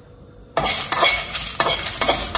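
Dried red chillies frying in a metal kadai, sizzling as a spatula stirs and scrapes them around the pan. The stirring and sizzling start suddenly about half a second in, after a quiet start.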